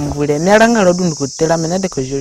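A young man speaking in a language other than English, in a pause of about a tenth of a second partway through, over a steady high chirring of crickets or other insects.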